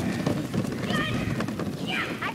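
Children running across grass after a rolling plastic kids' wagon, with scuffing and rattling throughout and a brief high-pitched squeal about a second in.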